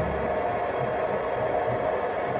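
A steady hum with an even hiss over it and an uneven low rumble underneath.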